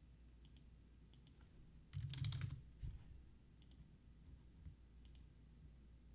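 Faint, scattered clicks of a computer keyboard, with a louder cluster of clicks and a dull knock about two seconds in.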